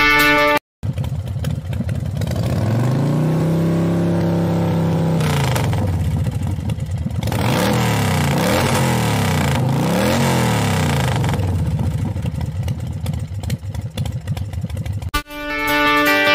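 Engine revving sound effect: the pitch climbs to a held high rev for about two seconds and falls away, then three quick revs up and down follow before it cuts off about a second before the end. Guitar music is heard briefly at the start.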